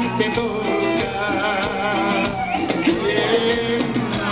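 A Mexican banda playing live, with trumpets and a male lead singer over the band.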